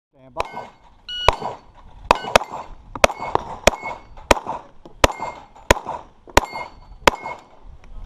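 A Glock 21 .45 ACP pistol firing a string of about ten shots at steel plates over roughly six seconds, with a short ringing after several shots as plates are hit. A brief beep of a shot timer about a second in starts the string.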